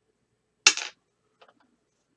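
Two small dice rolled onto a hard surface: one sharp clatter as they land, then a couple of faint ticks as they settle.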